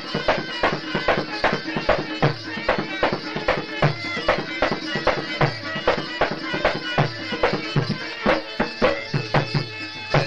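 Afghan traditional majlisi music in an instrumental passage: fast, evenly repeated plucked string strokes over a steady reedy drone, with low drum strokes underneath. It stops abruptly at the very end.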